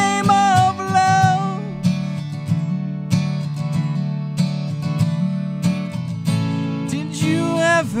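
Acoustic guitar strummed in a steady rhythm, with a man's held sung note ending about two seconds in and his singing coming back in near the end.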